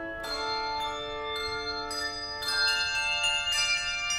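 Handbell choir playing: chords of bells struck together every second or so, each chord ringing on and overlapping the next.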